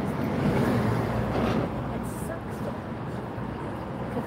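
Street ambience on a city sidewalk: a steady wash of traffic noise with indistinct voices in the background.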